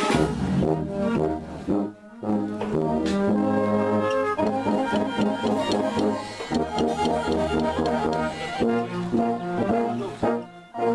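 Brass-led wind band playing held chords, with a short break about two seconds in, then quicker moving notes.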